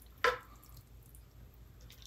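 A metal spoon moving a wet sautéed chicken, mushroom and spinach filling from a frying pan onto puff pastry: one short, sharp knock with a brief ring about a quarter second in, then only faint soft sounds.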